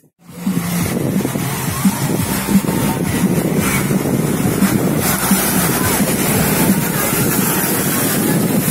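Wind buffeting the microphone over small waves breaking on a sandy shore, a steady rushing noise.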